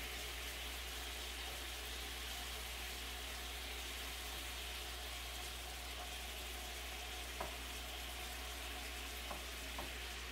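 Chunks of meat sizzling in a frying pan as they are stirred with a spatula, with a few light clicks of the spatula against the pan near the end.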